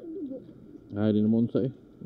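A man's low hum, held steady for about half a second a second in, then a short second hum.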